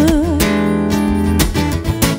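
Acoustic guitar strumming chords, with a woman's sung note wavering and fading out about half a second in.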